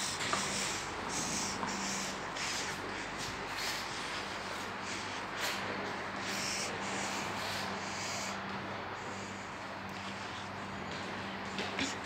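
Steady background noise of a building lobby with a faint hum, broken by scattered brief rustles and light footsteps as the camera is carried.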